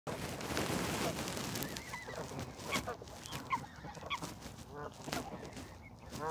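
A crowd of juvenile mute swans and coots giving short, repeated calls while feeding, with sharp clicks of bills pecking grain from a hand. A burst of rustling noise fills the first second.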